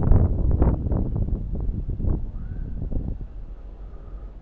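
Wind buffeting a bicycle rider's camera microphone while riding, a gusty low rumble that is strongest in the first two seconds and eases off towards the end.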